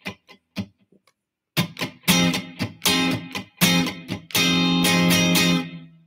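Electric guitar played in a funk rhythm: a few short, scratchy muted strums, a brief silent gap, then strummed chords broken by muted strokes, ending on a chord held for about a second that fades out near the end.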